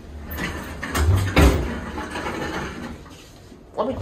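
Schindler 300A elevator's center-opening car doors sliding along their tracks, with a low rumble and two knocks about a second in.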